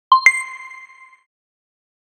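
Logo-intro chime sound effect: a ding with a higher, brighter ding a fraction of a second after it, both ringing out and fading within about a second.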